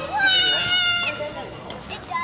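A child's loud, high-pitched shout, held at a fairly level pitch for under a second and dipping at the end, with quieter chatter of other children's voices in the hall after it.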